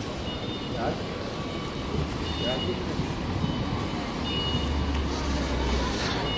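City street ambience: steady traffic noise with a low engine rumble that swells in the second half, a short high electronic beep repeating at intervals, and faint voices of passers-by.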